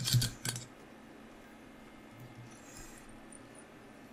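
A few quick small metallic clicks of fly-tying tools being handled at the vise in the first second, then only a faint hiss.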